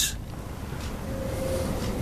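Low, steady background rumble of room noise, with a faint thin hum in the second half; no distinct event.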